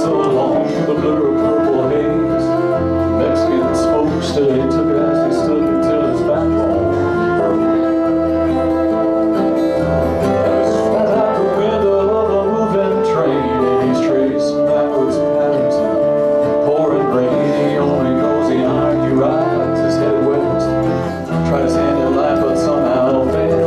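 Live acoustic band music: strummed acoustic guitars and an electric bass under a flute holding long, steady notes.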